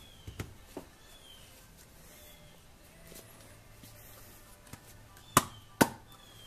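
Handling of a 4-inch PVC tumbler drum with a flexible rubber end cap: mostly quiet, with a few faint clicks early on and two sharp knocks about half a second apart near the end.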